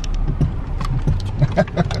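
Steady low rumble of a car's engine and tyres heard from inside the cabin while driving, with short voice sounds in the second half.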